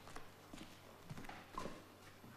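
A few faint, separate knocks and taps of dishes being handled and set down on a table, the loudest near the end.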